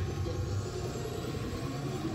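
Bass-heavy routine music and arena noise from a cheerleading broadcast, played through a television speaker and sounding muffled and rumbly.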